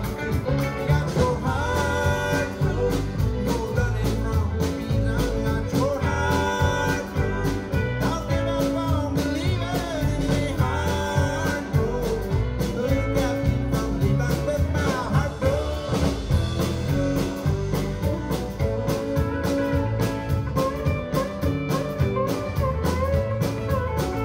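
Live country-bluegrass band playing, with acoustic guitars and banjo over a drum kit.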